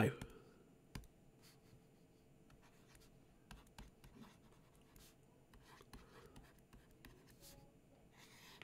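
Faint scattered taps and light scratches of a stylus on a tablet screen as a heading is handwritten.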